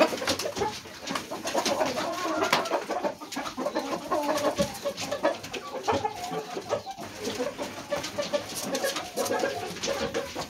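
Chickens clucking and murmuring in low, overlapping calls, with scattered short clicks.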